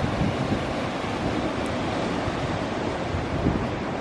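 Ocean surf breaking on a rocky lava shoreline, a steady rushing wash, with wind rumbling on the microphone.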